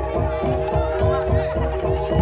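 Live jaranan dor music: drums keep a steady beat under sustained held tones, with voices singing or shouting over it.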